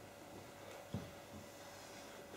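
Quiet room tone with a faint steady hum and a single soft thump about a second in.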